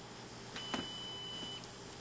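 Computer countdown timer's alarm going off as it reaches zero: one steady high beep lasting about a second, with a short click just after it starts.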